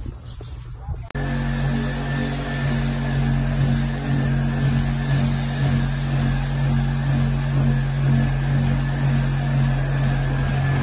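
Power tool cutting cast iron pipe: a loud, steady machine noise with a low hum and a thin high whine, starting suddenly about a second in and running on without a break.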